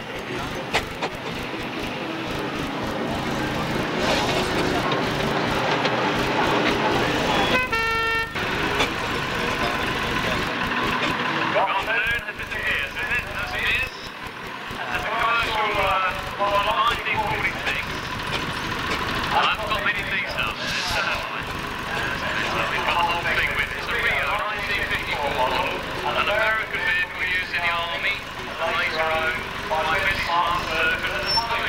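Vintage lorry engine running as it moves slowly past, with one short horn toot about eight seconds in. From about twelve seconds a voice talks over the engine noise.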